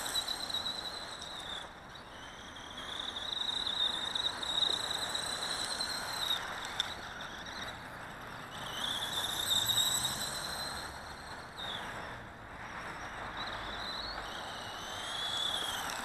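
Electric drive motor of a small 1/18-scale RC desert buggy whining at speed, its pitch climbing and falling in about four runs as the throttle is worked, with short let-offs between them. A steady rushing noise runs beneath the whine.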